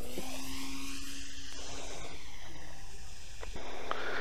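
Brushless electric motor and propeller of a Carl Goldberg Mirage RC model plane, a steady whine from the plane in flight overhead, rising in pitch for about a second and then slowly falling.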